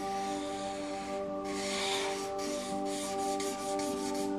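Felt-tip marker rubbing across paper in back-and-forth colouring strokes, loudest about two seconds in, over steady background music.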